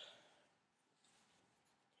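Near silence: a faint, brief rustle of the mermaid tail's stretchy fabric being handled, about a second in.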